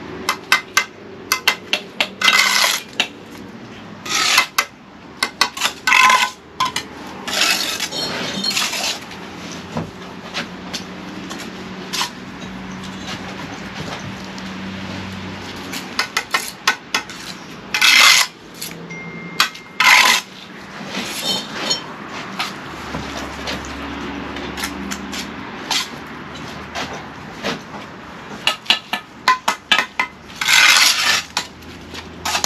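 Steel bricklaying trowel working bricks and mortar: irregular sharp clinks and taps against brick, with short scrapes scattered through.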